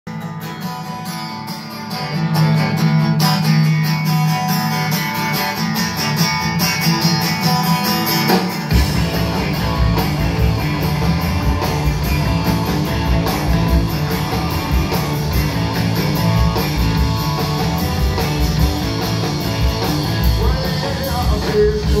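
Live rock band playing a song intro: guitars alone at first, then bass and drums come in about nine seconds in and the full band plays on.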